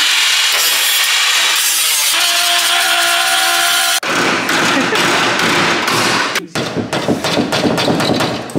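A cordless power cutting tool buzzing steadily as it cuts away the plastic and sheet metal of a car's rear wheel arch. About halfway it gives way to a rapid run of hammer blows on the arch's metal lip, which become sparser, separate strikes near the end.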